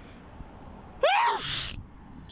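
A man sneezes once, about a second in: a short high-pitched cry that turns into a hissing burst.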